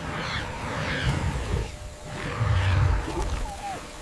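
Hyenas growling low over a noisy background, with the loudest growl about two and a half seconds in.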